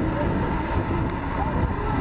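Steady, irregular wind rumble on the camera microphone, with faint voices in the background.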